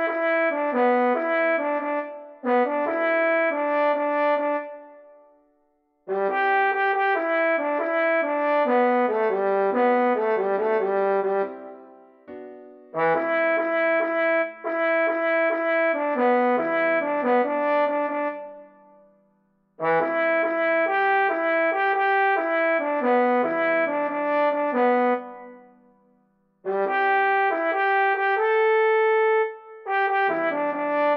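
Trombone sound from score playback, playing a melody at a brisk tempo in phrases of several seconds, each ending in a short pause.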